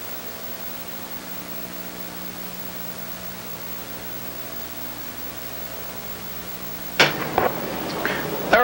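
Steady hiss with a faint low hum, the background noise of an old 1983 videotape broadcast transfer. About a second before the end, a sudden loud sound cuts in.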